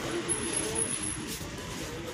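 Wire shopping trolley rolling over concrete paving, a steady rumble and rattle of its wheels, with voices of people close by.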